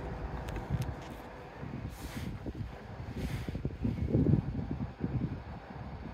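Low, uneven rumble of wind on the microphone, with a faint steady hum.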